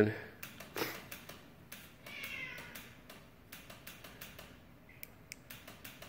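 A cat meowing once, about two seconds in, then a short high cry near five seconds. The cat is unhappy with the flashing light. Faint scattered clicks are heard in between.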